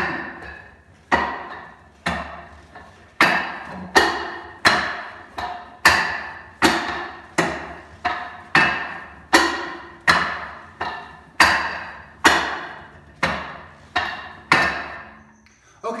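Wing Chun wooden dummy being struck on its wooden arms and trunk by hands and forearms: about twenty sharp wooden knocks, each with a short ringing tail, at a steady pace of one to two a second, stopping about a second before the end.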